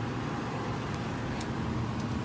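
Steady low outdoor background rumble with a faint hum, and one small click about one and a half seconds in.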